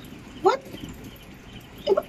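Mostly quiet, with one short exclamation of "What?" about half a second in, its pitch gliding sharply, and another short word starting at the very end.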